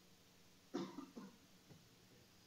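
A person coughs once, sharply, a little under a second in, followed by a smaller cough, over quiet room tone.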